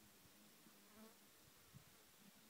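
Faint buzzing of a fly, its pitch wavering slightly, with a soft click near the end.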